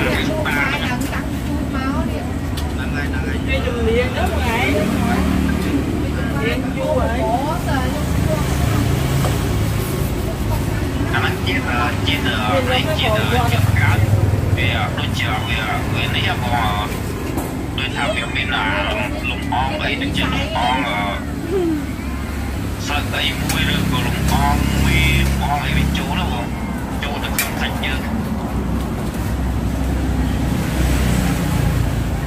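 Voices of people talking around a dinner table, busiest in the second half, over a steady low rumble.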